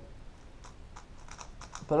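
3x3 speed cube being turned by hand: faint, irregular light plastic clicks of its layers. He finds the cube not yet gummy or tight enough and means to gum it up.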